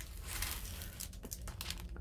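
Clear plastic cover film being peeled back from the sticky adhesive surface of a diamond painting canvas, crinkling and crackling irregularly.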